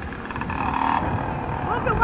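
Street noise from a car passing close by, over a steady low rumble, with children's voices in the background near the end.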